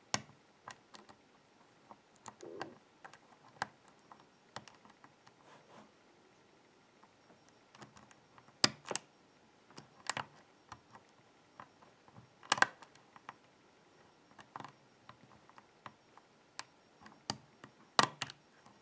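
Lock pick working the pin stack of a BKS euro-cylinder held under tension with a wrench: irregular small ticks and scrapes, with a few sharper clicks about halfway through as pins are lifted toward the shear line.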